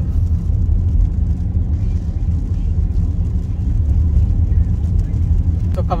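Car driving on a wet road, heard from inside the cabin: a steady low rumble of engine and road noise.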